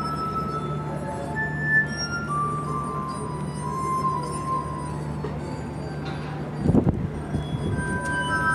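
Glass harp: wet fingertips rubbing the rims of water-tuned wine glasses, sounding a slow melody of sustained singing notes, one pitch after another. A few low thumps come about seven seconds in.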